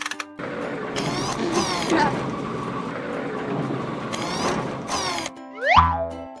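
Cartoon machine sound effect: a dense mechanical whirring and ratcheting for about five seconds, cut by several sharp hisses, then a rising whistle and a low thud just before the end, over children's background music.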